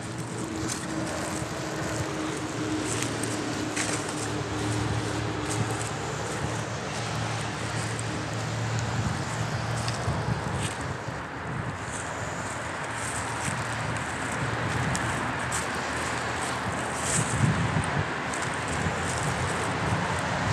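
Steady background of road traffic from a nearby avenue, with wind on the microphone.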